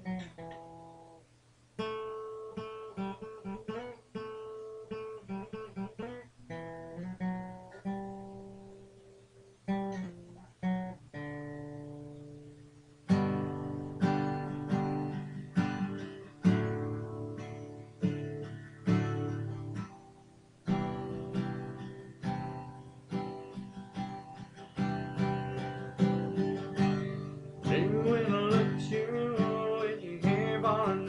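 Acoustic guitar playing the instrumental intro of a song: single picked notes and broken chords that ring and fade, then fuller, louder strummed chords from about 13 seconds in.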